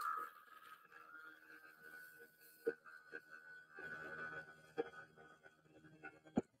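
Flex-shaft rotary tool running faintly with a steady high whine as a thin bit in its quick-change chuck works against an amethyst crystal, with a few small clicks of bit on stone.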